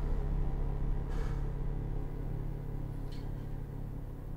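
Dark, tense film score: a low, steady rumbling drone under sustained tones, easing slightly in level, with a faint swell about a second in.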